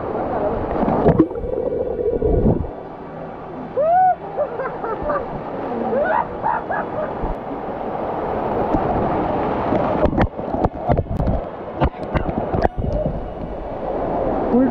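A waterfall pouring and splashing close to the microphone, a steady rushing of water. About four seconds in a person gives a short rising-and-falling shout, with a few brief voice sounds after it, and several sharp clicks close to the microphone come between about ten and thirteen seconds in.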